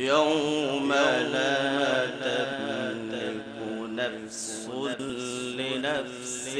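A man reciting the Quran in the melodic tajwid style, amplified through a microphone. He starts suddenly after a pause and draws out long, wavering, ornamented notes.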